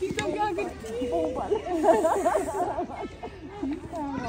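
Several women's voices talking over one another in a warm greeting, with a short hiss about two seconds in.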